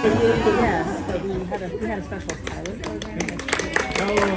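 Several people talking at once, their words indistinct, with a few short sharp clicks in the second half.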